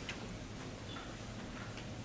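Sparse faint ticks and light scratches of writing out equations on a board, with a sharp click at the very start, over a steady low hum.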